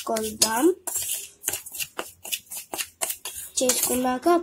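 A utensil clinking and scraping against a steel mixing bowl in a run of quick, irregular taps while flour is being stirred.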